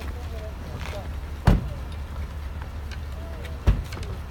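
Two heavy thuds of a Cadillac Escalade's doors being shut, about two seconds apart, over a low steady rumble.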